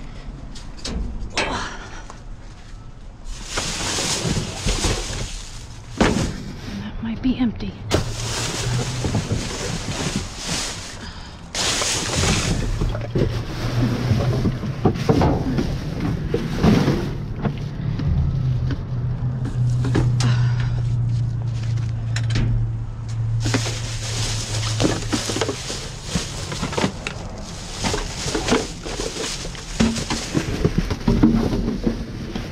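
Plastic trash bags and cardboard boxes rustling, crinkling and scraping as they are pushed aside and pulled about in a metal dumpster. A steady low hum runs through the middle stretch.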